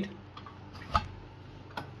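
Three light metallic clicks as the push-fit lid is pulled off a stainless steel milk can, metal on metal, the loudest about halfway through.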